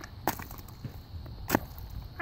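Two sharp blows of a sledgehammer coming down on a pumpkin lying on asphalt, about a second and a quarter apart.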